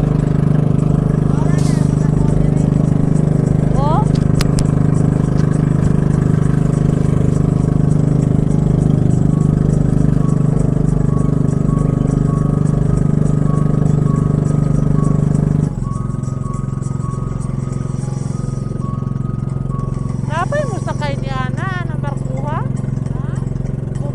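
Motorised outrigger boat's (bangka's) engine running with a loud, steady drone. About two-thirds of the way through the engine note drops to a quieter, lower-powered sound.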